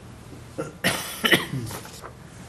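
A person coughing: a short run of rough coughs starting about half a second in, with the loudest two bursts around the middle.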